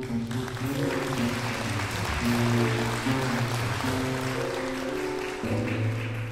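A jazz band with piano and double bass playing a slow ballad while an audience applauds over the music; the applause thins out near the end.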